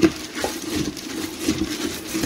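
A spoon stirring wet, gelatin-soaked birdseed in a stainless steel pot, with light scraping and a few sharp clicks of the spoon against the metal, one right at the start and another about half a second in.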